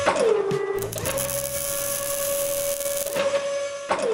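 Sound-effect mechanical whine of animated robot arms: a steady motor hum that glides down in pitch just after the start, comes back up about a second in, holds steady, and glides down again at the end, with a few sharp clicks near the one-second mark.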